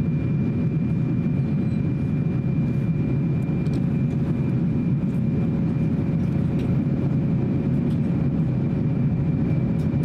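Steady cabin noise of an Airbus A350-900 on approach, heard beside its Rolls-Royce Trent XWB engine: a deep rumble of airflow and engine with a steady hum and a faint high whine running through it.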